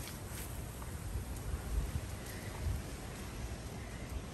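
Quiet outdoor background noise with faint rustling and a few soft, scattered thuds and light clicks.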